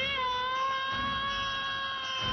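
A long, high-pitched scream from a reanimated corpse, rising sharply at the start and then held on one pitch.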